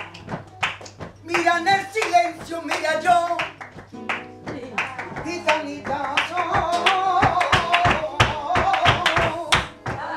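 A woman singing flamenco cante in wavering, melismatic phrases, ending on a long held ornamented line, over steady palmas (rhythmic flamenco hand clapping).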